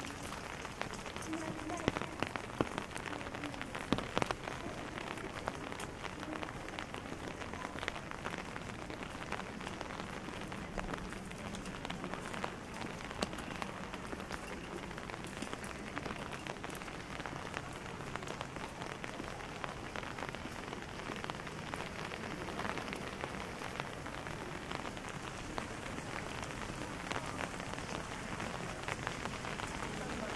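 Steady rain falling, a dense patter of drops, with a few louder taps in the first few seconds.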